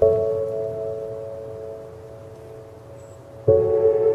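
Background music of slow, bell-like struck tones, each ringing out and slowly fading; a new strike comes at the start and another about three and a half seconds in.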